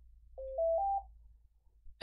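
Retevis MA1 dual-band mobile radio's power-on beep: three short tones stepping up in pitch, one after another, ending about a second in.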